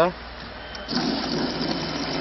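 A water vending machine starts dispensing: about a second in, water begins pouring from the nozzle into a 5-litre plastic bottle, a steady rushing that keeps on.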